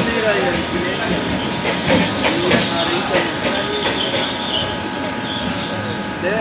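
Indian Railways EMU local train coaches rolling past on the rails, a steady rumble of wheels on track. A thin high wheel squeal sounds briefly about two seconds in.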